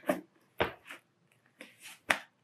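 A cardboard box being opened by hand: a few short scrapes and knocks of the lid and flaps, the loudest about half a second in, with softer rustles near the end.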